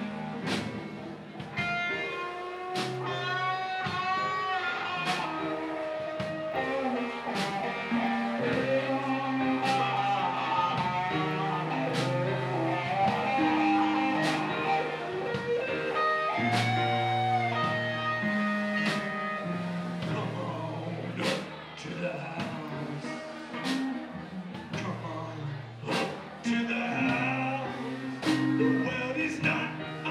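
Live band playing an instrumental break in a slow blues-gospel groove: electric guitar playing a lead line with bent notes over bass, drums and keyboard.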